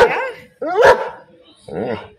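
German Shepherd dog barking twice, sharp and loud, at cats outside the window.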